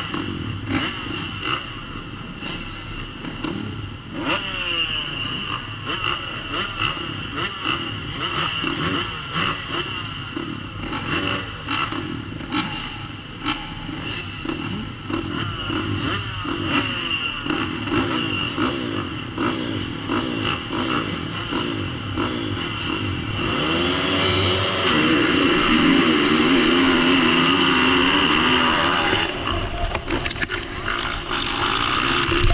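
A field of motocross bikes idling and blipping their throttles at the start gate, heard from a rider's helmet. About 23 seconds in, the engines rise to a louder, sustained full-throttle sound as the field launches off the gate.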